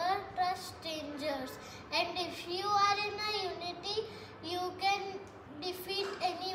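A young girl's voice in sing-song, half-sung phrases, with some words drawn out.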